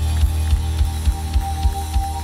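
Live worship band playing: sustained bass and guitar chords over a steady drum beat of about three strokes a second.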